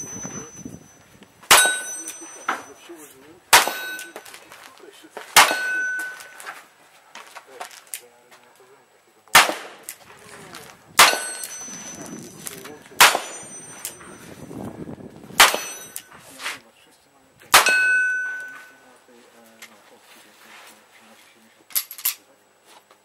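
A rifle fired about nine times at a slow, steady pace, roughly every two seconds with one longer pause. Most shots are followed by a short metallic ring as the bullet hits a steel target plate.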